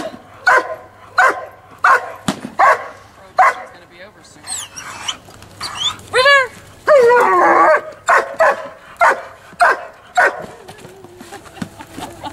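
Dog barking in a steady series, about one bark every 0.7 s, while held back on the leash by its handler. In the middle there is a break filled with higher gliding calls, then the barks resume faster, about two a second.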